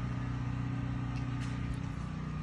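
A steady low mechanical hum of a motor or engine running at an even speed.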